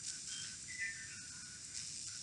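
A pause in speech: faint background hiss with a few short, faint high whistle-like tones, a pair of them about a second in.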